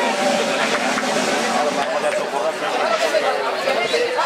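Crowd of spectators talking and calling out over one another: a steady babble of many voices.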